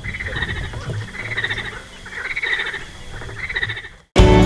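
A chorus of frogs calling at night by the water, in bursts about once a second.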